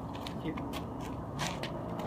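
A wooden bo staff spun through the air: a string of short, hissy swishes, several a second and unevenly spaced, over a steady low outdoor rumble.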